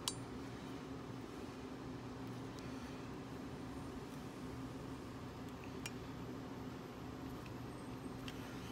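A sharp metallic click just after the start and a fainter one about six seconds in, from the levers and bolt of an antique mortise lock being worked by hand, over a steady low hum.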